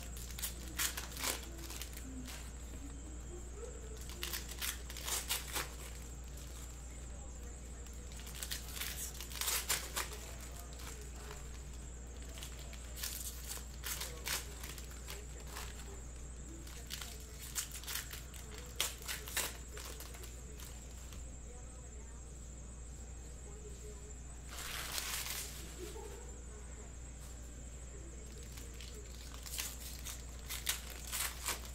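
Trading-card hobby packs being handled and torn open: irregular crinkling and tearing of the foil wrappers, in short scattered bursts with a longer stretch about 25 seconds in, over a steady low hum.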